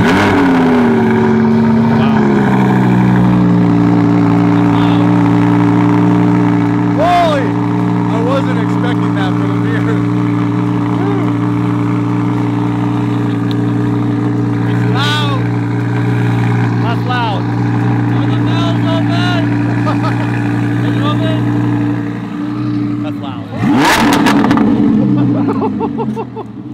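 Audi R8's V10 engine with a new aftermarket exhaust starting up: it catches with a high flare that settles over about two seconds into a steady, loud idle. A short, louder burst comes near the end.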